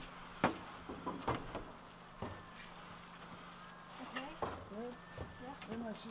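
A few scattered sharp knocks and taps of hand work at a window frame, the loudest about half a second in, with faint talking in the second half.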